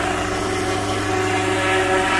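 Unmanned crop-spraying helicopter in flight, its engine and rotor giving a steady drone of several held tones.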